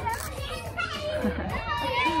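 Young children's high voices shouting and calling out to one another as they play, several at once.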